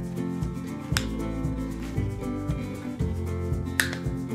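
Background instrumental music, with two sharp snips, one about a second in and one near the end: a hand cutter clipping through silk-flower stems.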